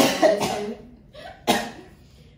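A person coughing: a cluster of coughs at the start, then one short cough about a second and a half in.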